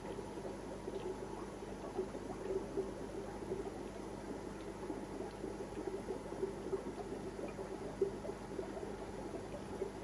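Steady bubbling and gurgling of air-driven aquarium sponge filters, with a faint steady hum beneath.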